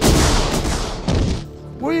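Loud battle blasts: one starts right at the beginning and dies away over about a second and a half, with a second blast about a second in. Background music runs underneath.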